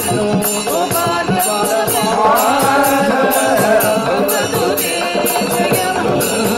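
Carnatic-style devotional bhajan singing, a sustained melodic vocal line with rhythmic percussion accompaniment keeping a steady beat.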